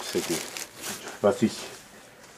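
Plastic bags crinkling and rustling as plastic-wrapped mail is stuffed into a backpack, with faint bits of a man's voice underneath.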